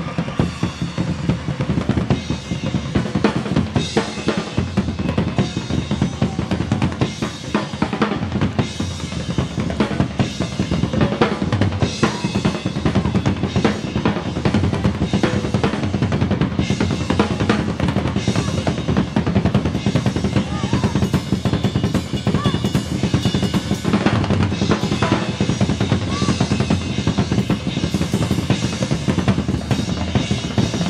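Drum kit solo recorded live in concert: continuous snare and bass drum playing with rolls.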